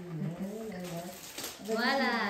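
Speech only: a voice talking in long, drawn-out syllables, with a louder voice coming in near the end.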